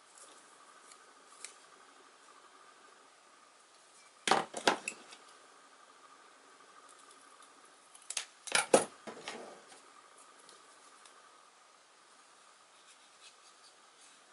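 Two short bursts of sharp snaps and clicks, about four seconds and about eight seconds in: a thin wooden lath being cut to length.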